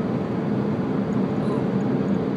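Steady road and engine noise of a moving car, heard from inside the cabin: an even low rumble with no changes.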